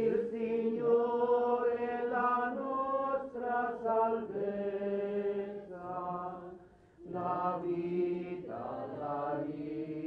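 A slow liturgical hymn sung in long held notes, phrase after phrase, with a short breath-break about seven seconds in.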